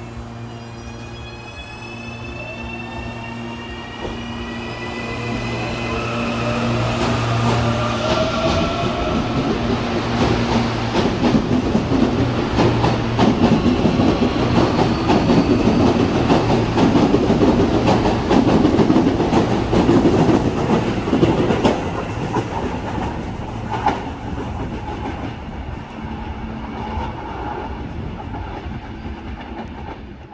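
CPTM series 8500 electric multiple unit pulling out of the station: the traction motors whine, several tones rising in pitch over the first eight seconds or so as it gathers speed. The cars then rumble and clatter past, loudest about halfway through, easing off in the last several seconds.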